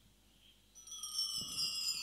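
After a near-silent start, a chime sounds about three-quarters of a second in: several high ringing tones that hold and sink slightly in pitch. It is the opening of a piece of recorded music.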